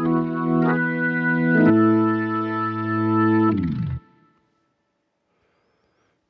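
Yamaha MONTAGE synthesizer playing held organ chords, changing twice, then sliding down in pitch and stopping about four seconds in, followed by silence.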